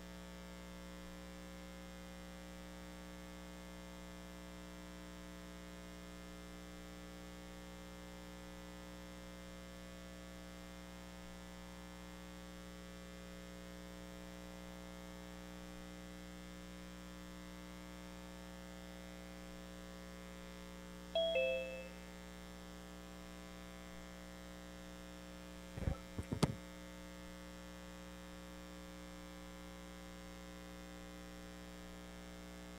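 Steady electrical mains hum on an open audio feed. About two-thirds of the way in, a short two-note falling chime sounds. A few seconds later come a few quick knocks, like a microphone being bumped.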